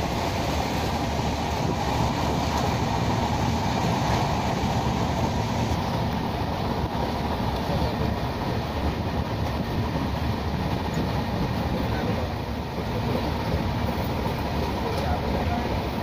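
Express passenger train running at speed, heard from inside a coach by the window: a steady, loud rumble and rattle of the wheels and carriage on the track.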